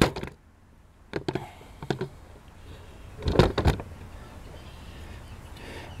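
Handling noise: a few light clicks, then a louder cluster of knocks and clunks about three and a half seconds in, as a metal spindle motor is picked up and brought to the CNC table, over a faint steady hum.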